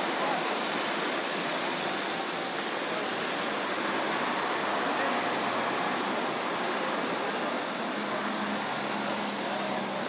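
Street ambience: a steady wash of road traffic noise with indistinct voices of passers-by.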